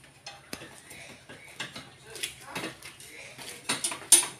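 Irregular light clicks and knocks of gear being handled and unfastened on a motorcycle's rear rack.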